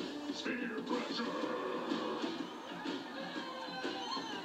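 Television playing in the room: a show's music mixed with voices from its speaker.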